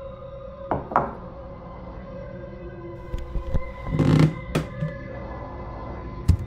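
Dark, droning film score of sustained tones, with a few short soft knocks and a louder brief noisy thud about four seconds in.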